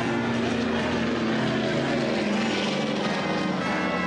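Big band swing music in a loud, dense full-band passage, held horn chords under a bright wash of sound.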